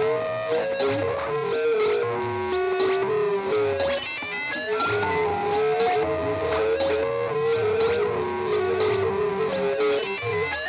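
Live electronic noise music from a table of effects pedals and electronics. Quick high-pitched downward sweeps repeat about two or three times a second over a wavering mid-pitch tone that steps up and down in pitch, with low pulsing underneath.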